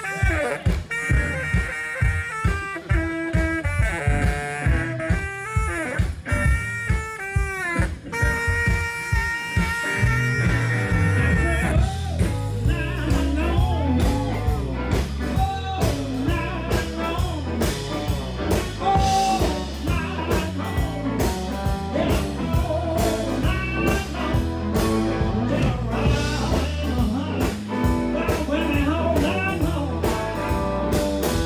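Live blues band playing: a saxophone carries the melody over bass and drums for about the first twelve seconds, then electric guitar lines with bent notes take over above the rhythm section.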